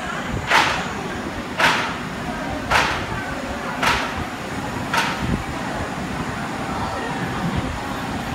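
B&M wing coaster station: five short, sharp hissing bursts about a second apart over a steady background rumble, then the train starting to roll out of the station.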